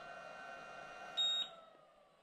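Optrel e3000X PAPR blower being switched off with its power button held down: the fan runs with a slowly falling whine as it spins down, and a short, high electronic beep sounds about a second in, after which the sound stops.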